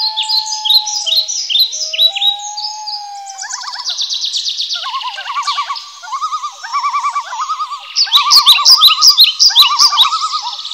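Several songbirds singing at once: overlapping high chirps, a long steady whistled note early on, and fast repeated trills from a few seconds in, loudest near the end.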